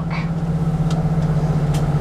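Tour bus engine and road noise heard inside the cabin while driving: a steady drone with a constant low hum.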